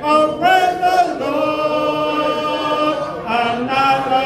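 A congregation singing a hymn a cappella, voices together without instruments, on long held notes that change every second or so.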